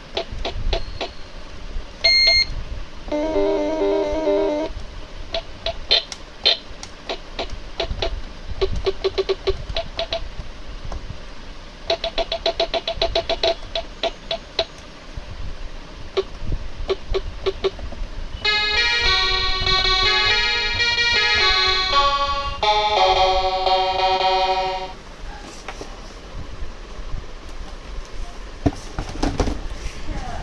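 A GOOYO GY-430A1 toy electronic keyboard sounding its built-in effects: a short beep, a brief warbling sound, clicks and short repeated tones. From about 18 to 25 seconds a tune of electronic notes plays.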